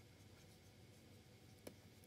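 Near silence, with faint sounds of a stylus writing on a tablet and one soft tap near the end.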